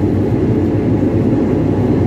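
CAT backhoe loader's diesel engine running steadily as the machine drives, heard loud from inside the operator's cab.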